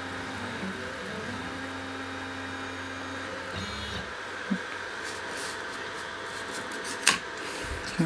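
Laser engraver's stepper motors running in steady low tones that shift in pitch as the head scans back and forth, stopping about halfway through when the engraving ends. A steady machine hum carries on after, with a small click and a short knock near the end.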